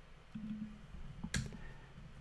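A single sharp keystroke on a computer keyboard about a second and a half in, deleting text while code is being edited, over quiet room tone. A faint low hum is heard before it.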